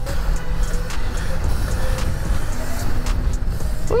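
Wind buffeting the microphone of a rider on a moving dirt bike, a dense steady rush heaviest in the low end, with faint steady tones from the bike or traffic underneath.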